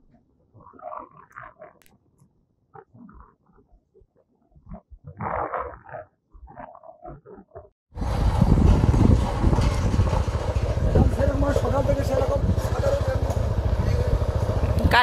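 Faint scattered sounds, then about eight seconds in a motorcycle's engine and a loud, steady rush of wind on the microphone cut in abruptly as the bike rides along.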